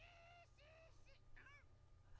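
Near silence, with faint, short high-pitched voices from the anime episode playing far down in the mix.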